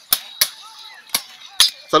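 Machetes chopping sugarcane stalks: four sharp, irregularly spaced strikes.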